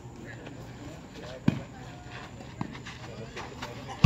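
A volleyball being struck by hands in play: one sharp slap about a second and a half in and a lighter hit about a second later, over faint voices of players and onlookers.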